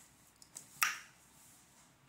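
A single sharp snap from tarot cards being handled, a little under a second in, with a faint tick just before it.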